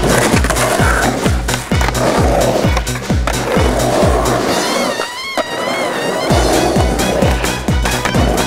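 Electronic music with a steady kick drum about twice a second. The beat drops out for about a second some five seconds in, where a wavering high synth tone plays, then comes back. Skateboard wheels roll on concrete under the music.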